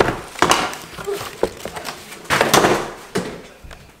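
Cardboard record mailer being torn and pulled open by hand: several short ripping, scraping bursts, the longest and loudest about two and a half seconds in.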